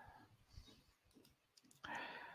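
Near silence, with a couple of faint short clicks.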